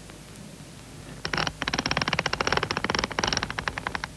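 A fast run of sharp mechanical clicks, more than ten a second, starting about a second in and stopping shortly before the end.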